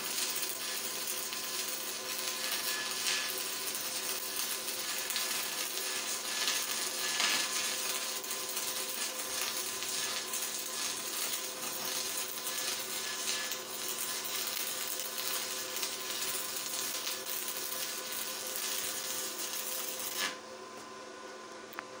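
Stick (MMA) welding arc from a DEKO 200 inverter welder: an electrode burning in a steady, crackling hiss. The arc breaks off abruptly near the end.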